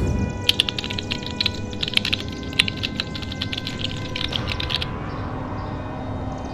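Rapid, irregular computer-keyboard typing clicks for about four seconds, starting about half a second in, over a steady droning ambient music bed.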